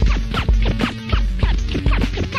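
Early-1980s hip hop DJ cutting on turntables: rapid back-and-forth vinyl scratches, several a second, over a drum-machine beat with a heavy kick.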